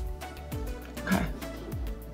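Background music with a steady beat of low kick-drum thumps and ticking hi-hats. About halfway through there is one short, loud burst of sound.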